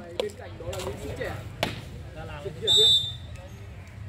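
A referee's whistle gives one short, loud blast near the end, over faint voices of players and spectators. A single sharp slap comes about a second and a half in.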